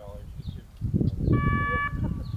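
A single short buzzer-like tone, steady in pitch, sounds for about half a second just past the middle and cuts off suddenly, over a low rumble that grows louder about a second in.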